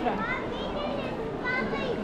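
Young children's high voices calling out twice over the general chatter of a crowd of people.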